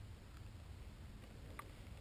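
Quiet, low background rumble with a couple of faint short clicks near the end.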